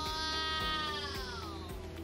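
A long, drawn-out "wooow" in awe from a person's voice, one held note that rises slightly and then falls away, over steady background music.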